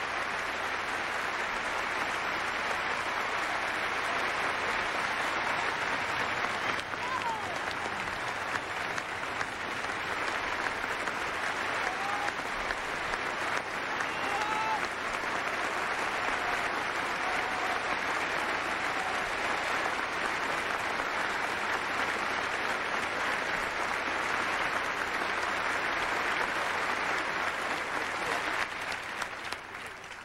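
Large theatre audience applauding in a standing ovation, a dense, steady clapping with a few faint calls over it, dying away near the end.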